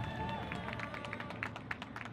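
A cymbal line's quick, uneven run of sharp taps and clicks, starting about half a second in, from the performers' cymbals and feet as they move through the routine.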